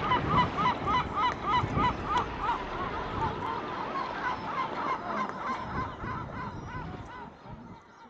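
Yellow-legged gulls calling: a fast series of repeated, arching yelping calls, about three or four a second, that fades away towards the end.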